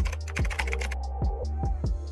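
Keyboard typing sound effect: a rapid, uneven run of key clicks as text is typed out, over background music with a steady low bass.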